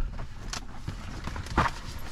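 Handling noises as a booklet and papers are moved about inside a stationary car: a short click about half a second in and a louder knock about a second and a half in, over a low steady rumble.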